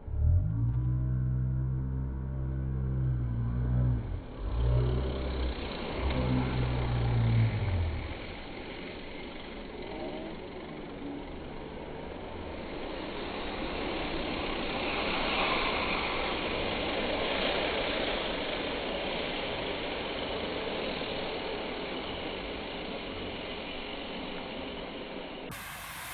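A low rumble for the first several seconds, then the rising and fading whir and rush of a bunch of racing bicycles sprinting past, loudest as the riders cross the line about midway.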